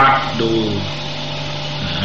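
A man's voice speaks a few words over a steady low hum, and the hum carries on alone through the second half.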